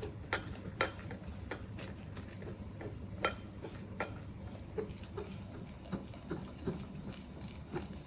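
Light, irregular clicks and taps of kitchen utensils against a mixing bowl as hot water is worked into keto bun dough, over a faint steady hum.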